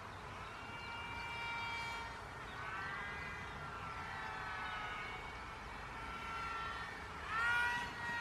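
Twin electric motors and propellers of a Sky Hunter 230 RC flying wing whining in flight, the pitch rising and falling as the throttle is varied to steer. Near the end it is louder for a moment as the plane passes close.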